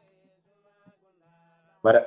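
Near silence in a pause between a man's spoken phrases, with only faint thin tones. His voice starts again near the end.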